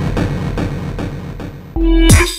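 Jump-up drum and bass track in a short break: the drums drop out and a fading, evenly pulsing synth texture plays. A loud held bass note cuts in near the end, leading back into the drop.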